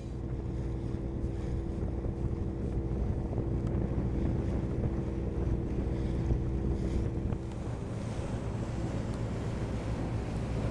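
Motor houseboat under way: its engine runs with a steady low drone, mixed with wind on the microphone and water rushing along the hull.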